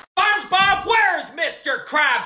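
A man speaking in a high, swooping cartoon-character voice, starting just after a brief silence at the start.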